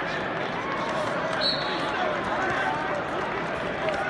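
Arena crowd noise: many overlapping voices of spectators and coaches calling out at once. A brief high tone sounds about a second and a half in.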